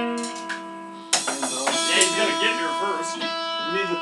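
Amplified electric guitar: a held chord rings out and fades, then a new chord is struck about a second in and left to sustain, with voices talking over it.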